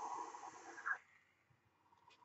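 A long drag on a mechanical-mod vape: a steady hiss of air drawn through a Kennedy dripping atomizer while its coil fires, which stops about a second in.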